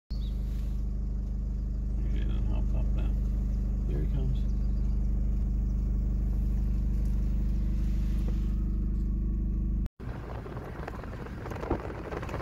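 Car engine idling with a steady low hum, heard from inside the car. Shortly before ten seconds it cuts off abruptly and is replaced by the rougher tyre and wind noise of the car moving along the road.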